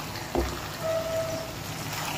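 Okra, onions and chicken sizzling steadily in a non-stick wok, with one dull knock about half a second in as they are stirred with a spatula. A short steady tone sounds for under a second, starting about a second in.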